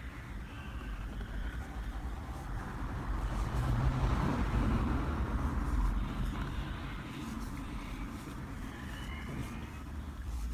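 Low rumble of a passing vehicle, swelling to its loudest about halfway through and then fading.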